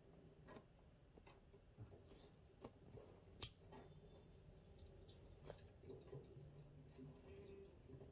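Near silence, broken by a few faint clicks and one sharp, louder click about three and a half seconds in: a lighter being struck to relight a joint.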